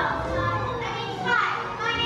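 Children's voices speaking lines from the stage, several overlapping, with one voice making a high, sliding call about one and a half seconds in.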